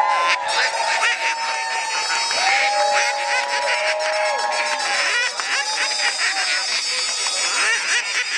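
Many duck calls blown by a crowd at once, overlapping drawn-out calls that rise and fall in pitch, over crowd cheering and chatter.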